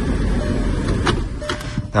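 Volkswagen Passat CC engine idling, heard from inside the cabin as a steady low hum, just after starting on a newly programmed key. A couple of faint clicks come about a second in and near the end.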